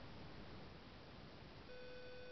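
Faint steady hiss, then near the end a steady electronic tone starts suddenly and holds on one pitch, like a sustained beep or hum.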